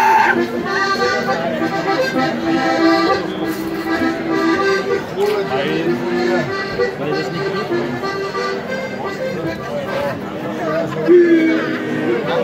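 Live Alpine folk dance music played on an accordion through a PA.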